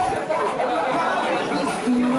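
Overlapping chatter: several people talking at once in a small group, with no single voice standing out.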